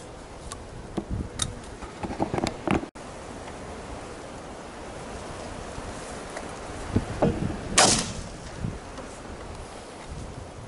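Knocks, clicks and rustling from someone shifting about in a camouflage-net hide and handling a shotgun, over steady wind noise. The sounds come in two clusters, with a brief drop-out in the sound just before three seconds in, and the loudest is a short, bright rustle or scrape about eight seconds in.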